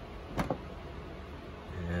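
A single short, sharp click about half a second in, over a low steady room hum.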